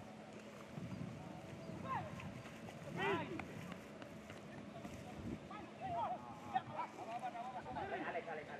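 Short, scattered shouts and calls from football players across an open pitch, distant and unclear, over a faint steady hum. One sharp knock stands out about six and a half seconds in.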